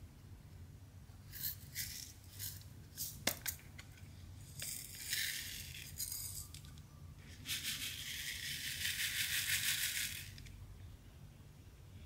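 Pink round resin diamond-painting drills poured from a small plastic bag into a plastic sorting tray: scattered light clicks and a bag rustle, then a dense rattle of many small beads in the tray for about three seconds near the end.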